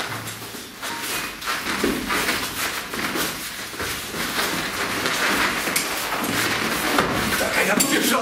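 Scuffling of a hand-to-hand grappling drill: shuffling feet, rustling clothing and small knocks, with indistinct voices and short utterances among the partners.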